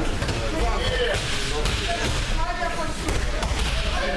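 Thuds of bodies landing on judo mats as pairs practise throws, under a steady hubbub of many children's voices in the hall.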